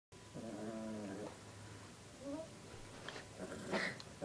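A small dog growling: one steady growl about a second long near the start, then a few short, fainter sounds.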